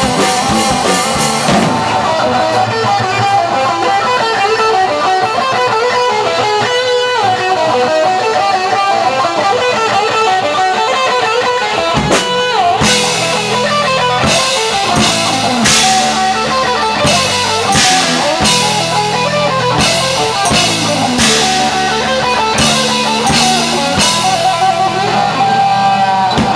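Live rock band playing an instrumental passage on electric guitar, bass guitar and drum kit. About halfway through there is a downward pitch slide, after which the drums and cymbals come in harder.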